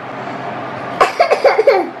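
A woman coughing, a quick run of several short coughs starting about a second in.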